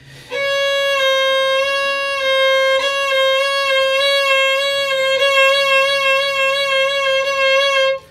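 Violin playing one long held note with an even, controlled vibrato, the pitch wavering steadily up and down. The tone breaks briefly twice, at about three and five seconds in, as the bow changes direction.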